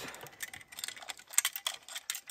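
Steel saw chain clicking and rattling as it is worked by hand onto a Stihl chainsaw bar: an irregular run of small metallic clicks, busier in the second half. The chain had come off and is being refitted.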